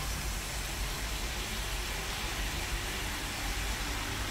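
Steady frying hiss from a stainless steel pan as soaked freekeh is poured onto sautéing onions, chicken gizzards and livers.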